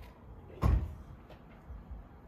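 Tesla Model Y's power liftgate closing and latching shut with a single loud thump about half a second in, followed by a faint click.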